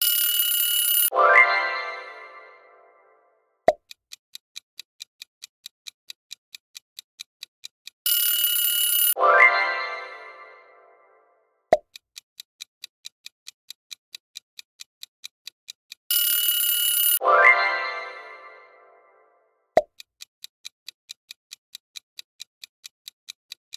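Quiz-timer sound effects repeating in a cycle every eight seconds. A ringing alarm sounds for about a second as time runs out. A chime follows and fades over about two seconds, then a sharp pop, then a clock ticking several times a second until the next alarm.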